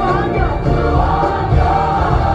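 Gospel worship music: a choir singing with instrumental accompaniment.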